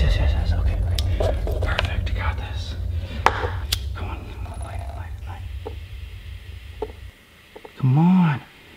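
A handheld lighter struck again and again without catching: a series of sharp clicks among breathy, whispered sounds, over a steady low rumble that stops about seven seconds in.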